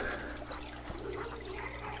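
Aquarium water trickling and bubbling at the surface, over a steady low hum.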